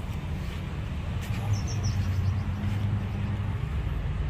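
Steady low hum of a running motor, with a short run of faint high chirps about a second and a half in.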